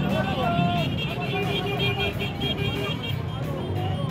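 Several motorcycle engines running at idle together, a steady low drone, under a crowd's voices.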